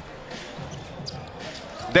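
Arena crowd noise during a basketball game, with a basketball bouncing on the court.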